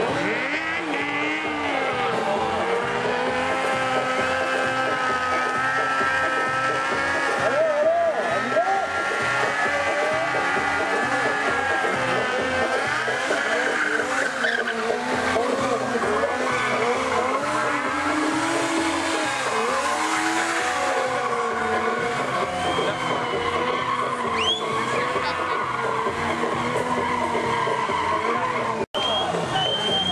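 Stunt motorcycle engines revving up and down, with tyre squeal from the bikes sliding and wheelieing, over the noise of a crowd and a PA voice with music.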